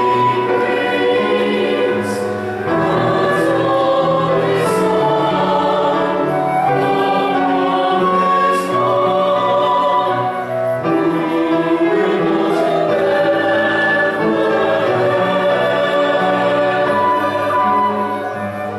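Church choir singing an anthem with piano and flute accompaniment, the voices holding long notes with a few crisp 's' sounds.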